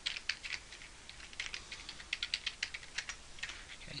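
Typing on a computer keyboard: a quick, irregular run of keystroke clicks, fairly quiet.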